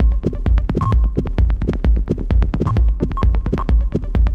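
Techno track in a DJ mix: a steady deep kick drum at about two beats a second under fast, busy clicking percussion, with a few short high blips.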